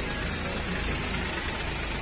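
Car and truck engines idling in stopped street traffic: a steady low rumble with street noise.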